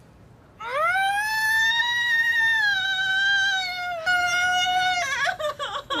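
A woman in labour screaming in pain: one long high scream that rises at the start and is held for about three seconds, then breaks into a second, shorter one.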